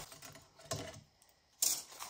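A few short clicks and rustles from paper journal pages being handled and moved, with a near-silent gap between them and the sharpest about one and a half seconds in.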